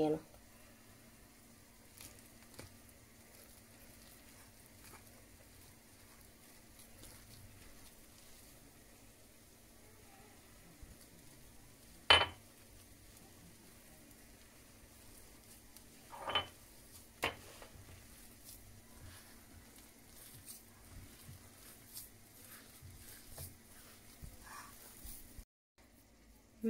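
Hands working flour into mashed potato in a glass bowl: faint mixing sounds over a steady low hum. There are a few sharp knocks against the bowl: a loud one about halfway through, then two smaller ones a few seconds later.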